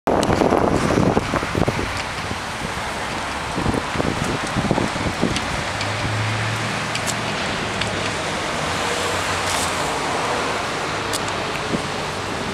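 Roadside traffic noise of cars going by, with wind buffeting the microphone, heaviest in the first couple of seconds. A car passes with a low engine hum about six seconds in.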